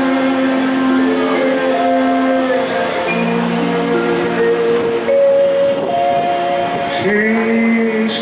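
Harmonium and violin playing a slow instrumental passage of long held notes. A male voice enters in song about seven seconds in, sliding up into its first note.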